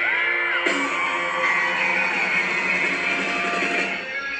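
Live band playing loud pop-punk rock with electric guitars, with long high yells gliding over the music. The sound jumps abruptly about two-thirds of a second in, as at an edit between recordings.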